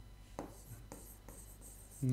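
Marker writing on a whiteboard: several faint short strokes.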